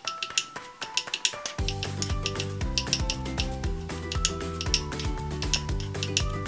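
Background music with a steady beat; the bass drops out for about the first second and a half, then comes back in.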